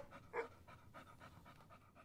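Faint dog-panting sound effect: quick, even breaths about four a second, slightly stronger at the start.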